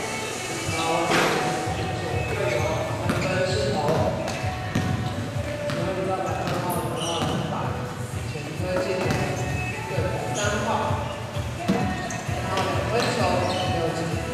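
A basketball bouncing on a gym's wooden floor during play: several short, irregular thuds, with players' voices calling across the court.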